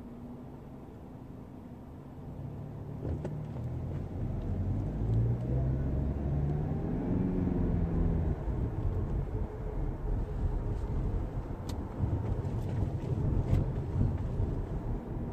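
Car pulling away from a stop and accelerating, heard from inside the cabin: the engine note rises in pitch a few seconds in, then settles into steady engine and road noise with a few light clicks.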